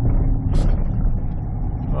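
Steady engine and road rumble of a 5-ton grapple truck heard from inside its cab while driving at city speed, with a short hiss about half a second in.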